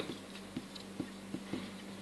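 Faint marker strokes on a whiteboard: a few soft ticks spaced about half a second apart, over a steady low hum.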